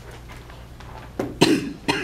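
A person coughing, twice, after about a second of quiet room tone; the first cough is the louder.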